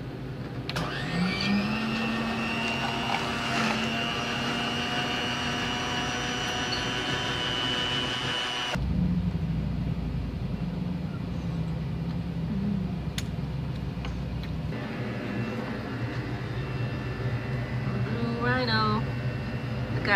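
Hot chocolate dispenser's mixing motor running as it fills a paper cup: it spins up with a rising whine about a second in, runs steadily, then cuts off suddenly after about eight seconds. A lower steady hum follows.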